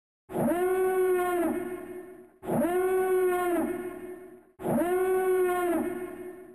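A howl-like animal call sound effect, played three times over, identical each time: each call rises quickly, holds one steady pitch for about a second, then drops and fades away.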